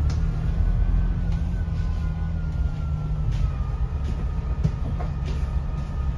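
Alexander Dennis Enviro500 double-decker bus with its Euro V diesel engine, heard from the upper deck while under way: a steady low engine and road rumble. Over it a thin high whine slowly falls in pitch, and there are a few light rattles.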